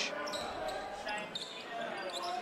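Court sound of a basketball game in play: a ball dribbling on a hardwood floor under faint voices from players and crowd in the arena.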